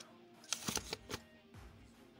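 Folded paper leaflets being handled: a few faint rustles and soft paper taps around the middle, over faint background music.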